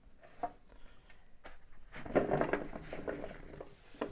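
Raw potato chunks tipped from a plastic bowl, tumbling and clattering onto a metal baking tray: scattered knocks at first, then a thicker run of rattling from about two seconds in.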